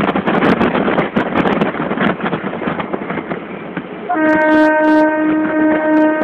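EMU electric multiple-unit train running at speed, a loud rumble with clicks of wheels over the rails, heard from inside the second coach. About four seconds in, the driver sounds the train horn: one long steady note, still going at the end.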